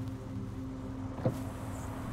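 Car engine idling, heard as a steady low hum inside the cabin, with a single short knock about a second and a half in.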